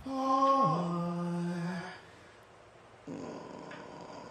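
Male singer holding a sung note, then sliding down to a lower note held for about a second before it stops. After a short lull, quiet accompaniment comes back in about three seconds in.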